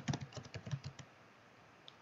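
Typing on a computer keyboard: a quick run of about eight keystrokes in the first second, then the typing stops, with one faint click near the end.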